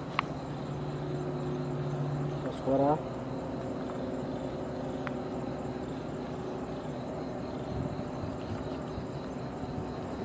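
Steady outdoor night background noise with a faint low drone, strongest over the first three seconds. A brief murmured voice comes about three seconds in.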